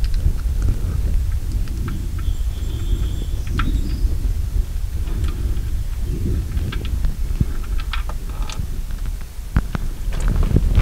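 Faint scattered clicks and rubbing as a gloved hand slowly unscrews a car's oil drain plug from the oil pan, with a couple of sharper clicks near the end as the plug comes free. A steady low rumble sits underneath.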